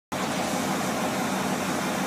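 Steady mechanical hum with a hiss, unchanging throughout.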